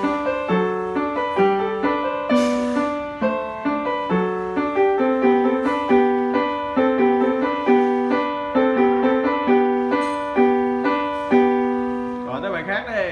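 Upright piano being played: a moderately paced, evenly timed melody over a lower accompaniment, each note ringing and fading.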